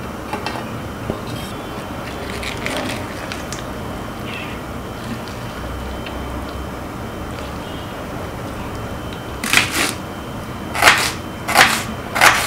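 A steady background hiss, then near the end a few sharp knocks of a kitchen knife cutting a red onion on a wooden chopping board.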